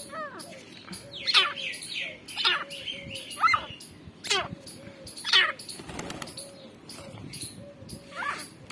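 Grey francolins calling: a loud, sharp, sweeping chirp about once a second over a softer low note that repeats underneath, with a brief flutter of wings about six seconds in.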